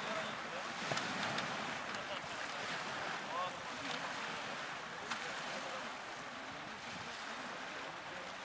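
Choppy water washing against a muddy shore, with gusting wind buffeting the microphone. Faint voices can be heard.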